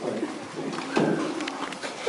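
A low, muffled human voice, heard twice: once at the start and again about a second in, with no clear words.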